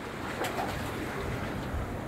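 Steady outdoor noise of sea waves washing on the jetty rocks, with a low rumble of wind, and no distinct events.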